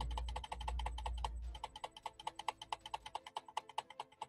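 Rapid, even clicking at a computer, about ten clicks a second. A low rumble sits under the first second and a half.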